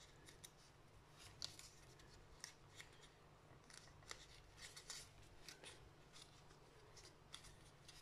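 Faint, irregular crackling and rustling of card paper as fingers roll back its torn edge.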